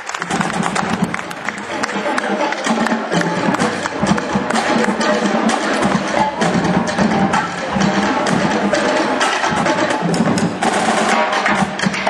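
Marching band playing a field show, with drums keeping a busy, steady beat under the melody.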